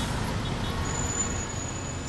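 Street traffic ambience: a steady low rumble of road traffic.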